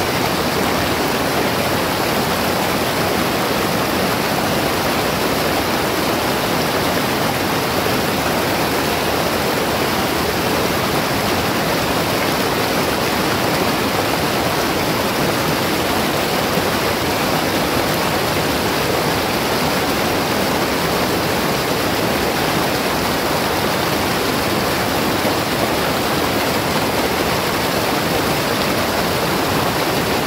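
Fast-flowing Alas River rushing through whitewater rapids between boulders: a steady, unbroken wash of water noise. The current is fairly strong.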